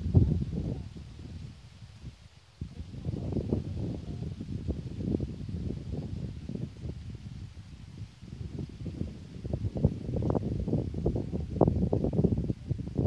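Wind buffeting the microphone in irregular gusts, with a brief lull about two seconds in.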